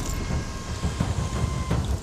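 Low rumbling roar of a burning caravan just after it exploded in a fireball. A thin steady high tone runs through it and stops shortly before the end.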